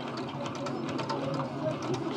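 Faint voices in the background over a steady low room hum, with a few light ticks.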